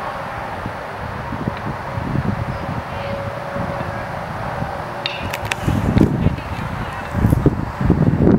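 Open-air ballfield background noise with a few sharp knocks a little after halfway: a baseball being hit and fielded for the final out. Gusty rumbles and voices follow near the end.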